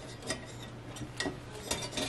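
A few scattered light clicks and taps as a frosted glass warmer shade is handled and fitted onto its metal frame.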